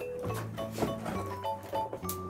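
Background music: a melody of short held notes over a steady bass line.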